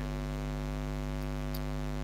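Steady electrical mains hum with a stack of overtones, unchanging throughout.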